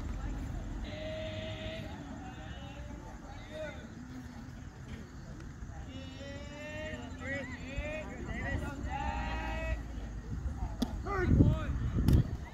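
Distant voices of baseball players and spectators calling out, with drawn-out, sing-song shouts, over a low rumble of wind on the microphone that gusts near the end.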